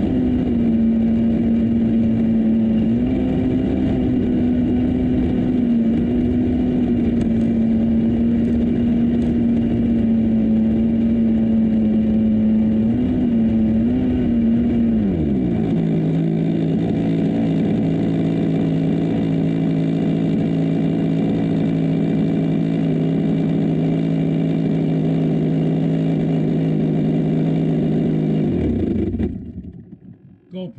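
Radio-controlled Zlin Z50 model plane's .46-size engine running at a low taxi throttle, with a couple of short blips. About halfway through it is throttled back to a lower, steady idle as the plane stops, and it cuts out suddenly a second before the end.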